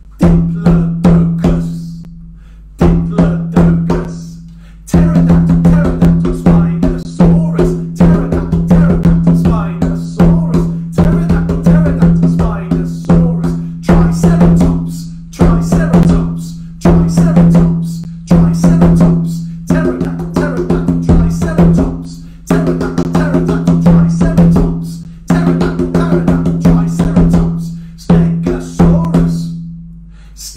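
Conga drum played with bare hands: a fast, rhythmic run of strokes with a low ringing note under them, broken by short pauses every two to three seconds.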